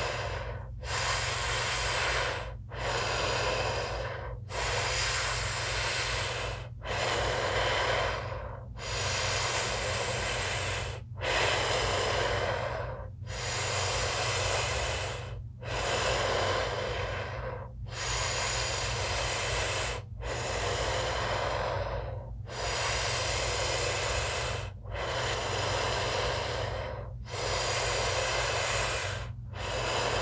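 A woman doing circular breathing through the mouth for breathwork: forceful inhales and exhales follow one another without a hold, each lasting about two seconds with only a brief dip between them. A steady low hum runs underneath.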